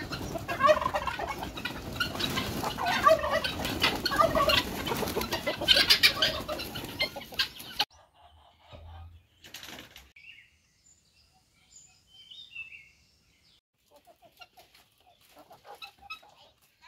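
A flock of chickens clucking, with wings flapping, at a busy coop; the sound cuts off suddenly about halfway through. After that it is mostly quiet, with a few faint high calls and some soft scattered sounds near the end.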